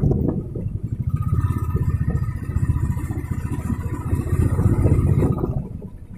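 A road vehicle driving: a low, rapidly pulsing rumble of engine and road noise, with a faint steady whine from about a second in until shortly before the end.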